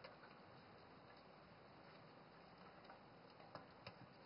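Near silence, with a few faint light ticks near the end as a round aluminium cake tin is handled and cocoa powder is shaken around inside it.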